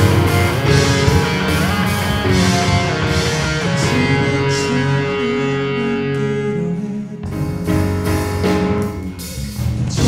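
Live rock band playing an instrumental passage: electric guitars, bass guitar and drum kit, with a note held for a couple of seconds in the middle. The bass and drums drop out briefly about seven seconds in, then the band comes back in.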